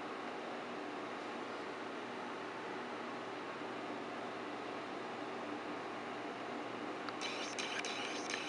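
Steady room hiss with a faint low hum while nothing is done, and a brief rustle with a few clicks near the end.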